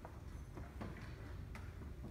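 A few faint, irregularly spaced clicks over a low, steady room hum.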